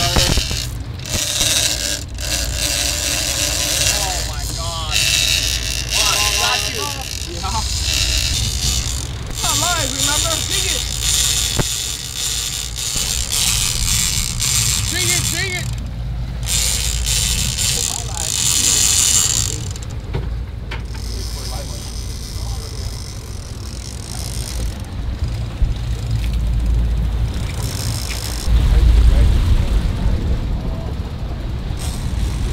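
Steady rush of wind and water with a deep rumble on the deck of a sportfishing boat under way, and indistinct voices calling out a few seconds in.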